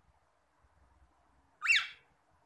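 Cockatiel giving one short whistled chirp near the end, rising and then falling in pitch.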